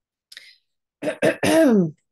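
A woman clearing her throat: a faint breath, then two quick rasps and a longer voiced one that falls in pitch.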